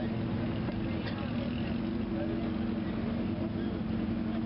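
A motor vehicle engine idling, a steady low hum over a rumble.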